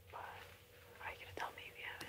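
Faint whispered speech from a person, in two short stretches, over a faint steady hum.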